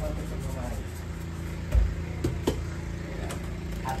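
Steady low hum in a home kitchen, with a few light clicks and a dull thump a little under two seconds in. Faint talk at the start.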